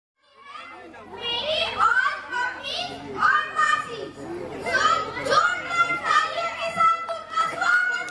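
A boy's voice over a microphone and loudspeakers, speaking in quick, lively phrases, then holding one long drawn-out call from about six seconds in.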